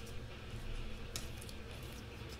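Faint rustles and a few soft clicks of trading cards being handled and slid through by hand, over a low steady hum.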